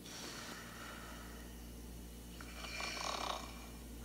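Recorded snoring of a man sleeping on his side, played faintly through a phone's speaker, with a louder snoring breath about three seconds in; it is a side snore.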